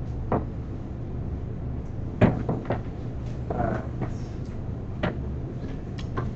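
Classroom room noise: a scattered handful of short, sharp knocks and bumps, about half a dozen, over a steady low electrical hum.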